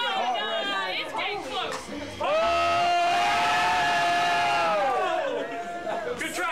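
Crowd chatter, then about two seconds in a person lets out one long, loud yell. It rises at the start, holds a steady pitch for about three seconds and falls away near the end.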